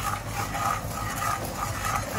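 Melted butter and sugar sizzling in a wok as a spatula stirs them over a gas flame, at the start of making caramel.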